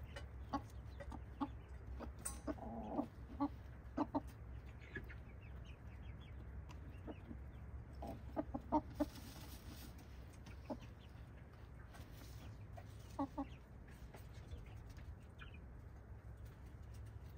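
Hens clucking: short, separate clucks scattered throughout, with small clusters of several about two to four seconds in, about eight to nine seconds in and again near thirteen seconds.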